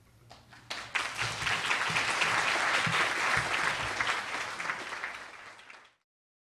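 Audience applauding, starting about a second in, then dying down and cut off abruptly near the end.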